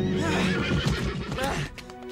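A winged cartoon horse whinnying in a long, wavering neigh that stops about a second and a half in, over a sustained orchestral film score.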